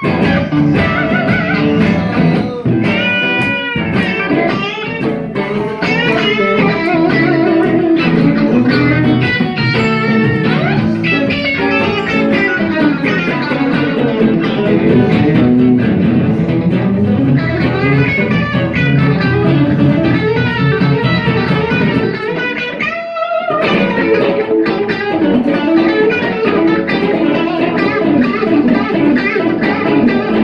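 Two electric guitars, a Telecaster-style and a Stratocaster-style, played together through amplifiers in an instrumental passage, with lead lines full of bent notes. There is a brief break in the playing a little past the two-thirds mark.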